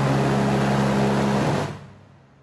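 Steady mechanical hum aboard a warship: a low, even drone under a loud rush of noise, which fades out near the end.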